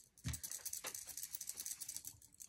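Blending brush scrubbed over paper in quick short strokes to apply ink: a fast, soft, scratchy rubbing, with a low knock about a third of a second in. Metal bracelets on the working wrist jingle lightly with the strokes.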